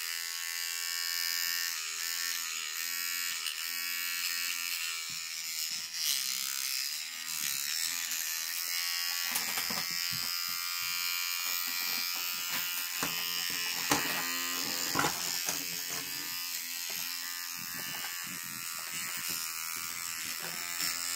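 Oral-B electric toothbrush running with a steady buzz while a long-tailed macaque bites and chews on the brush head; the pitch sags briefly now and then under the load. From about nine seconds in there are scattered clicks and knocks over the buzz.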